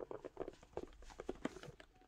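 Light, irregular taps and clicks of fingers and fingernails handling a cardboard card box as it is lifted off a towel.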